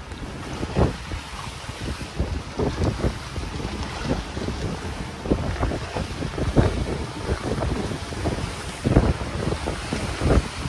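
Strong wind buffeting the microphone aboard a sailing yacht in rough sea, coming in irregular gusts, with waves rushing along the hull.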